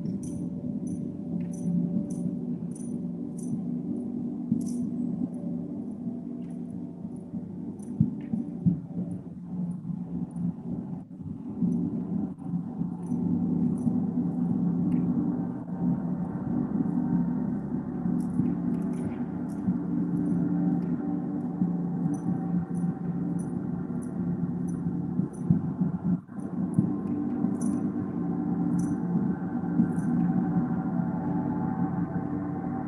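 Large hanging gong played continuously with a mallet in a sound-healing gong bath: a sustained, swelling wash of low ringing tones, with a few louder strokes.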